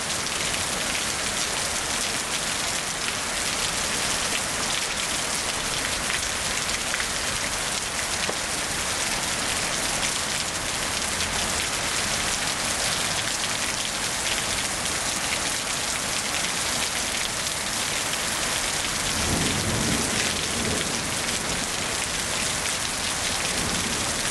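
Steady rain falling, with a low rumble of thunder about nineteen seconds in.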